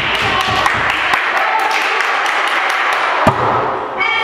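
Volleyball play in an echoing sports hall: girls' voices calling and chattering over scattered taps and thuds, with one sharp volleyball strike about three seconds in.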